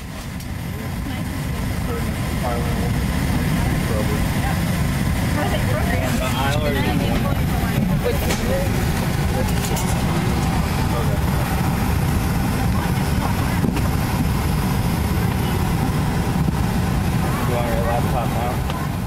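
Steady low rumble and air hiss inside a parked Boeing 737-700 cabin, with faint voices talking a few seconds in and again near the end.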